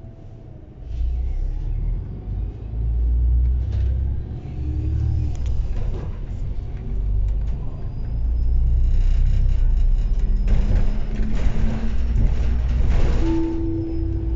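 MAN DL 09 double-decker bus's diesel engine pulling away about a second in and accelerating, a low rumble heard from on board that rises and falls in surges. A short steady tone sounds near the end.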